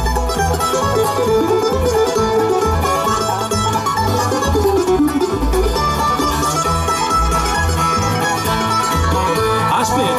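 Live bluegrass band playing an instrumental break with no singing: picked mandolin, banjo, acoustic guitar and an upright bass thumping a steady beat underneath.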